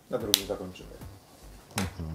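A sharp plastic click about a third of a second in, a felt-tip marker's cap snapped shut, over a short low murmur of a man's voice.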